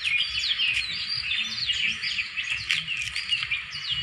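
A chorus of many small birds chirping and twittering, a continuous overlapping run of quick, high chirps.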